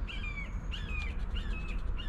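A bird calling, a short chirp repeated several times. Behind it is the faint scrape of a coin on a scratch-off lottery ticket.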